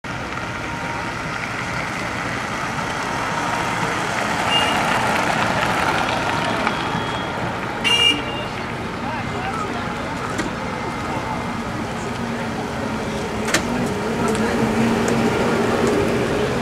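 Street ambience of a crowd of onlookers chatting as vintage trolleybuses roll slowly past. There is a short high toot about eight seconds in. A low steady hum from an approaching trolleybus grows in the last few seconds.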